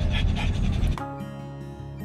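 A small long-haired dog panting rapidly, then background music starts about halfway through.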